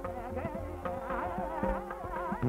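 Hindustani classical music: a melodic line with rapid wavering ornaments over a steady drone, with tabla strokes every half second or so.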